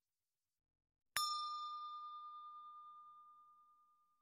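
A single bell-like ding sound effect, struck about a second in and ringing out over a couple of seconds: one clear tone with fainter higher overtones, fading away.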